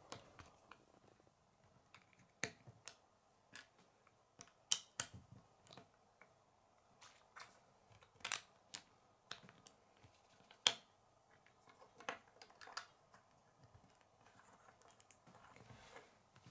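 Small white plastic Lego bricks clicking as they are handled and pressed together on a wooden table: scattered sharp clicks at irregular intervals, a second or two apart.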